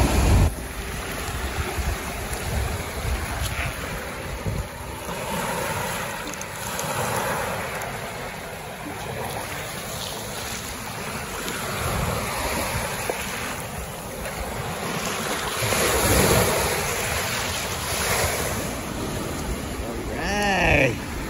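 Small waves washing up and draining back over a sandy shore, swelling and fading every few seconds, with wind buffeting the microphone.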